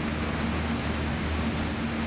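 The MUTT robotic equipment carrier driving across sand, its engine a steady low hum under a constant noise haze.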